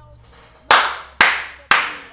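Three loud hand claps about half a second apart, each dying away quickly.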